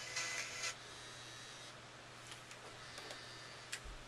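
Faint tinny music leaking from headphones, which stops under a second in. After it come a few light clicks and a low steady hum.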